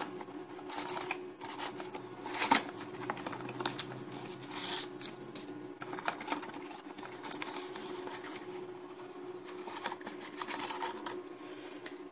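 Small cardboard bulb box being opened by hand: its flaps rustling and scraping, with scattered clicks and taps as the bulb is slid out, over a steady low hum.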